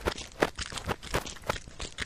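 Footsteps as a cartoon sound effect: a quick, hurried run of short taps, about two to three a second.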